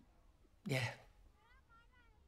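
Speech: a woman says one short word in Danish. In the second half, a faint, high, wavering call sounds in the background.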